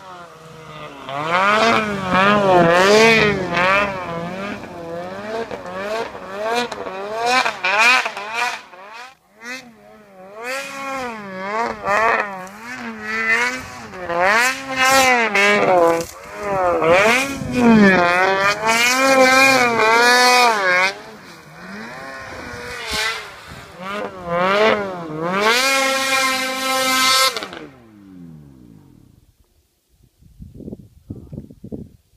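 Snowmobile engine revving hard and repeatedly, its pitch swooping up and down with each burst of throttle. Near the end the revs fall away and the engine goes quiet.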